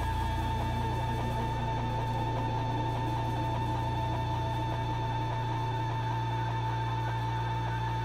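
Electric guitars and bass ringing out in one sustained drone through their amplifiers, with no drums. A steady high ringing tone sits over a held low bass note, unchanging throughout.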